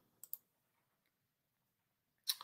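Near silence, with two faint clicks a fraction of a second in.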